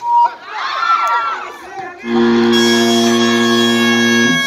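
Crowd shouting and cheering, then a loud, steady buzzer sounds about halfway in and holds for about two seconds. It is the signal ending the third quarter of a basketball game.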